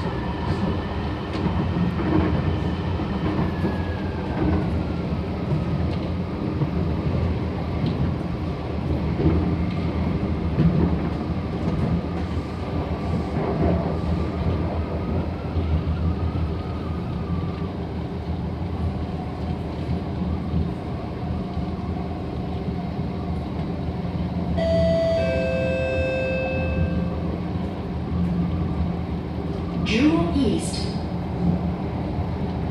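Interior running noise of an SMRT C751B metro train on elevated track: a steady rumble of wheels on rail, with a motor whine that drops in pitch a few seconds in. About 25 seconds in, a short multi-note electronic chime sounds over the rumble.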